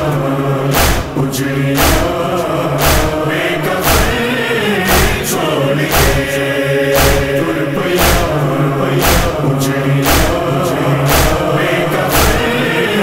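A chorus chanting a nauha (Shia lament) in unison over a steady beat of chest-beating (matam) strikes about once a second.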